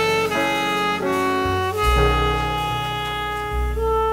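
Live jazz combo with a saxophone playing long held notes over bass and piano, the notes changing about once a second.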